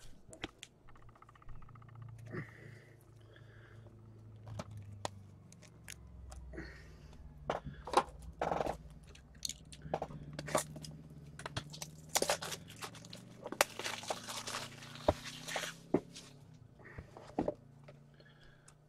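Trading cards and their packaging being handled: scattered light clicks and taps, with a longer stretch of rustling and scraping about twelve to sixteen seconds in.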